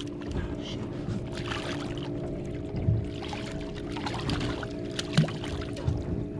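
A large black sea bass thrashing and splashing at the water's surface beside a boat as it is landed by hand, over a steady hum.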